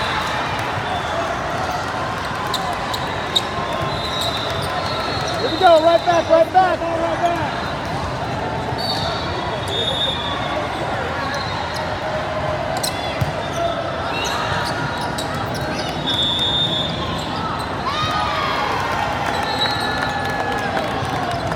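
Indoor volleyball game play: the ball being struck and bouncing, short high sneaker squeaks on the court floor, and a steady din of spectator and player voices in a large gym. About six seconds in, a brief burst of loud voices rises above the din.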